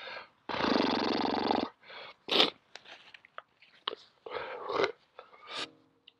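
A man's long, rasping groan in pain at the burn of a superhot chili, starting about half a second in and lasting about a second. It is followed by short, sharp hissing breaths and small mouth clicks.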